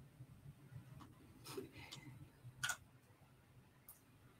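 Near silence: a faint steady low hum with a few brief faint clicks and short noises, the loudest a little before three seconds in.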